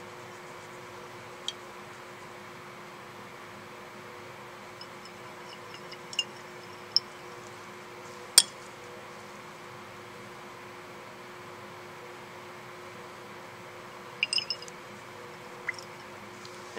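Glass Erlenmeyer flask being swirled beneath a burette, giving a few scattered sharp clinks and taps of glass, the loudest about halfway through, over a steady faint hum.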